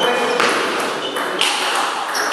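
Celluloid-type table tennis ball hit back and forth in a rally: sharp clicks of the ball on the bats and table, the clearest about half a second and a second and a half in.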